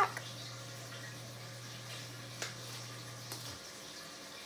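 A steady low electrical hum that cuts off suddenly about three and a half seconds in, with a faint click about two and a half seconds in.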